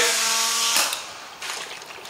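Palm-sized dual-action finish sander running free with a steady hum and hiss, then stopping about a second in. A few faint handling clicks follow.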